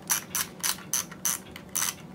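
Film-advance thumbwheel of a Fujifilm disposable camera being wound, a short ratcheting click with each push of the thumb, about three or four strokes a second.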